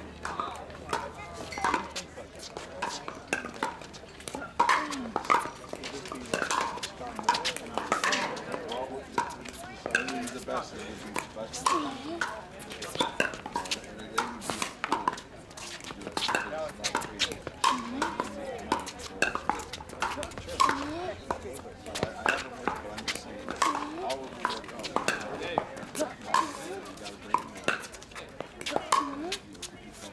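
Pickleball paddles striking the hard plastic ball in a rally, a sharp pock again and again at irregular spacing, over the indistinct chatter of spectators.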